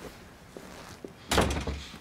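A door banging shut: one heavy thud with a short rattle past the middle.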